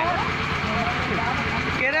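Single-cylinder diesel engine of a công nông farm tractor running steadily while it drives a water pump draining the stream.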